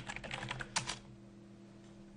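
Computer keyboard keystrokes: a quick run of key clicks finishing a typed command, ending about a second in, over a faint steady hum.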